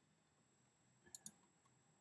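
Two faint computer mouse clicks in quick succession about a second in, against near silence, as the slide show is started.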